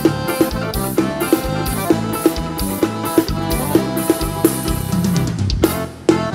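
Live forró band playing an instrumental passage: drums keep a quick, steady beat under held melody notes. The band breaks off for a moment near the end, then the beat comes straight back in.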